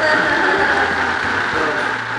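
Countertop blender running steadily, blending a squid-ink sauce.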